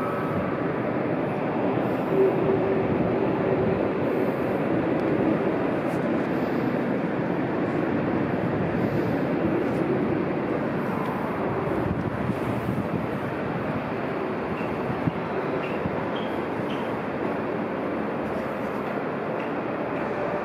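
Steady rumble of trains running through an elevated railway station, with constant city background noise and a faint low hum now and then.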